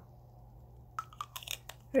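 Small plastic lipstick tube and its cardboard box being handled: a quiet second, then a quick run of light clicks and taps about a second in.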